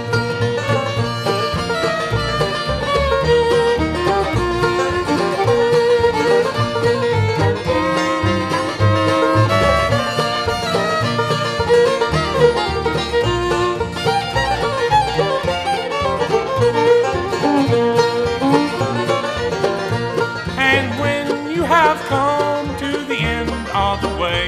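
Bluegrass band playing an instrumental break with the fiddle taking the lead. Upright bass, acoustic guitar, mandolin and banjo keep a steady beat underneath.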